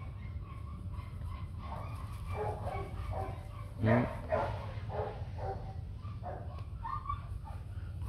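Dogs barking and yipping faintly in short, scattered calls.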